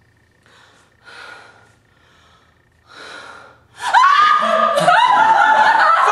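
A woman's voice: three short, breathy gasps, then loud, wavering laughter from about four seconds in that carries on to the end.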